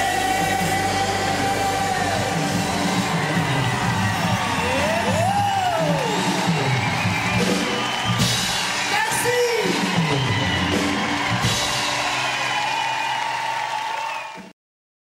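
Live pop music from a concert stage, sung by several singers into microphones, with the audience whooping and cheering along.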